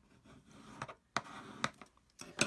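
Card stock being creased along its score line with a bone folder: a faint rubbing of the folder over the paper, with two light, sharp taps a little after a second in.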